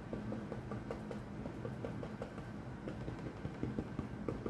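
Flat paintbrush pressing and dabbing black acrylic paint onto a cardboard box to build up a pine tree, heard as faint, irregular light taps several times a second over a low steady hum.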